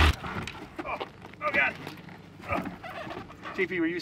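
Quiet, intermittent voices in short snatches of talk, right after background music cuts off.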